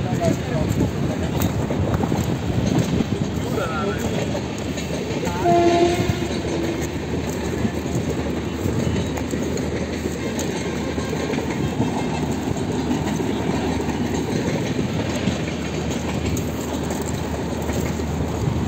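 Steady rumbling noise throughout, with a horn sounding once, briefly, about five and a half seconds in.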